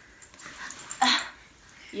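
A toddler's single short yelp about a second in.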